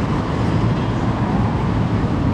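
City road traffic: a steady, even rumble of vehicles at a busy street crossing.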